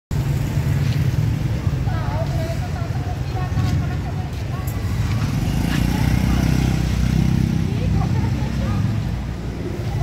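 City street ambience dominated by the low running hum of a motorcycle engine close by, swelling louder about halfway through, over traffic noise, with passers-by talking.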